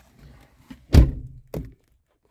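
Handling noise from a phone being moved: a loud dull thump about halfway through, then a softer one half a second later.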